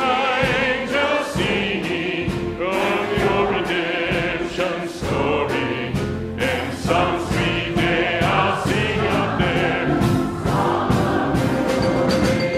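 Church choir singing a gospel hymn, accompanied by drums and cymbals.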